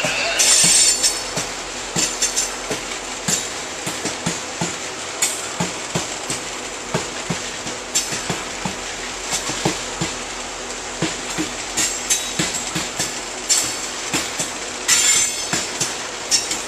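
Loaded coal hopper cars rolling past, their wheels clicking and clanking over the rails. Brief high-pitched wheel squeals come about a second in and again near the end.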